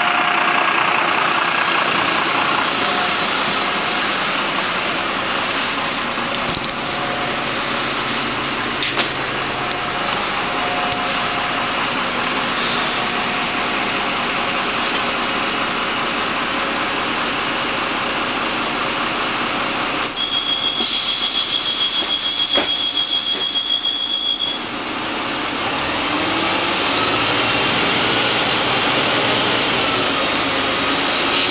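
Karosa B 961 city bus heard from inside the passenger cabin: steady engine and road noise while it drives. About two-thirds of the way through, a loud, high, steady two-tone electronic signal sounds for about four and a half seconds, then cuts off. Near the end the engine note rises as the bus pulls away.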